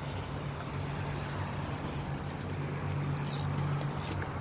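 A steady low motor hum under a haze of outdoor background noise.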